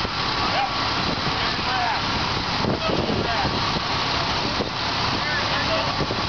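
Fire apparatus idling, a steady engine rumble, mixed with wind buffeting the microphone. Faint, brief calls from the crew come through now and then.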